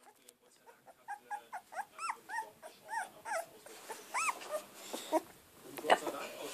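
Very young Polish Lowland Sheepdog puppy, 17 days old, giving a rapid series of short high whimpering squeaks, each rising and falling in pitch, two or three a second. A sharp knock sounds just before the end, the loudest moment.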